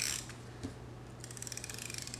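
A handheld correction-tape dispenser drawn across paper: a short scratchy stroke right at the start, then a longer stroke in the second half with its winding gears ticking rapidly.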